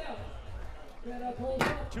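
Basketball striking the rim on a missed two-point shot: a sharp hit with a short ring about three quarters of the way in, followed by a smaller knock.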